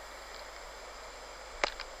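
Faint steady hiss of outdoor background noise, with a single sharp click near the end.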